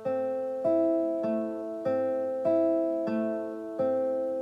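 Nylon-string classical guitar fingerpicked in a slow, even arpeggio, one note about every 0.6 seconds and each left to ring over the next: thumb, index and middle finger plucking the G, B and high E strings while the left hand holds A and C, giving a broken A minor chord.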